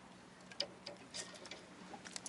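A handful of faint, irregular clicks and light taps as gloved hands handle a caught red seabream, over a faint steady low hum.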